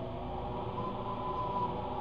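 A steady background hum with faint held tones, one of them sounding near the middle.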